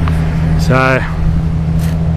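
A steady low hum, like an engine running, under one short spoken word.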